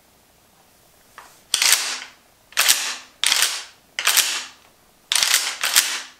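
Pump-action shotgun's slide racked repeatedly: a run of about six sharp clacks, some in quick pairs, each with a short ring-out, starting about a second and a half in.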